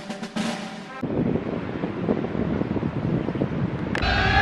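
Drum-roll intro music for about a second, cut off abruptly, then outdoor ambience with a steady low rumble of wind on the microphone.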